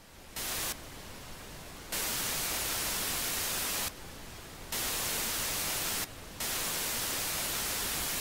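Television static hiss, jumping abruptly between a louder and a quieter level every second or so.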